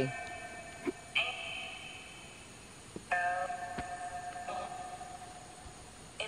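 Spirit-box device output: four separate chime-like ringing tones, each starting suddenly and fading over a second or two. The investigators take them for answers from a spirit.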